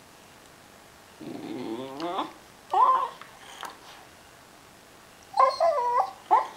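Corgi whining in three short bouts, the first rising in pitch and the last wavering, while straining toward a toy ball it can't reach.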